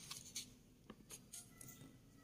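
Faint rustling and scraping of paper textbook pages being handled, with a soft click about a second in.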